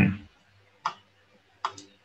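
A few sharp taps of a stylus on a tablet screen while handwriting: one about a second in and a quick pair near the end.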